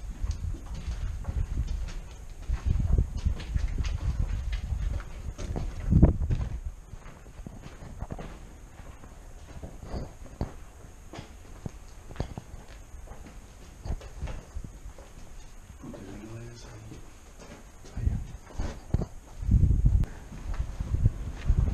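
Footsteps scuffing and knocking over a rubble-strewn concrete floor in irregular steps, with heavier low bumps about six seconds in and again near the end. A brief voice is heard late on.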